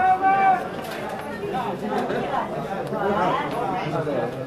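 Several men's voices talking and calling out over one another, with one louder call right at the start.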